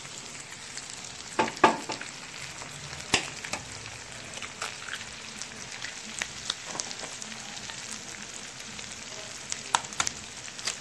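Diced potatoes, ham and freshly cracked eggs frying in oil in a skillet: a steady sizzle with scattered crackling pops, a few louder ones standing out.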